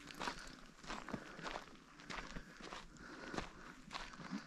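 Faint footsteps of a person walking on a dry dirt path, about two steps a second.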